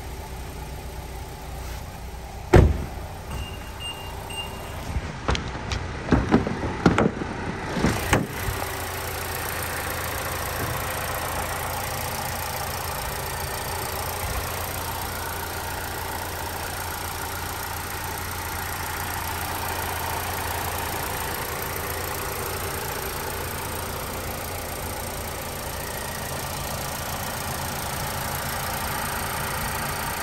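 A single sharp thump, three short high beeps, then a cluster of clicks and knocks. From about eight seconds in, the 2021 Nissan Altima's 2.5-litre four-cylinder engine idles steadily to the end.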